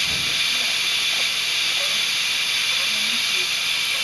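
Steady, high-pitched hiss of oxygen flowing through a newborn's clear plastic breathing mask.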